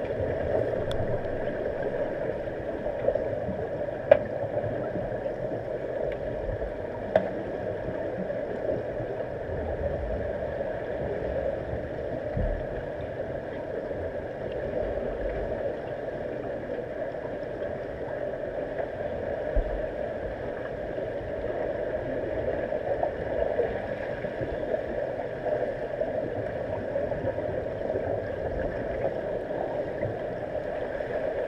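Steady muffled underwater noise of a swimming pool, heard through a submerged camera's housing, with a few sharp clicks and knocks, the clearest about 4 and 7 seconds in.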